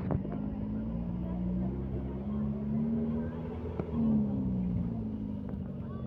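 Engine of a safari vehicle running as it drives along, a steady low drone whose pitch rises and falls a little, with a sharp knock at the very start.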